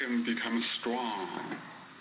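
Only speech: a quieter voice talking, thin and cut off in the highs like sound over a phone or radio line.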